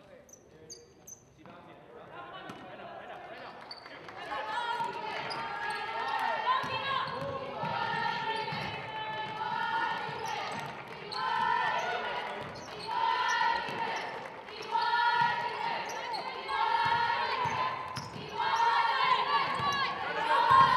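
A basketball bouncing on a gym's hardwood floor during play, with unclear voices of players and spectators shouting and calling, which grow louder about four seconds in.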